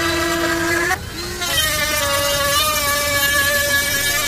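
Dremel rotary tool running with a cutting bit as it cuts a slot in the plastic blank of a UTV's dash switch panel. Its steady whine sits lower for about a second, dips briefly, then holds at a higher pitch.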